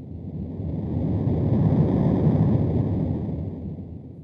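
Low rushing whoosh sound effect, a deep noisy rumble that swells to a peak about two seconds in and then fades away.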